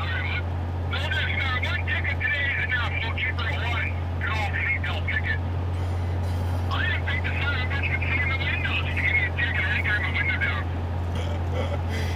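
Steady low drone of road and engine noise inside a moving vehicle's cabin at highway speed, about 110 km/h. A voice speaks over it in three stretches that stop and start.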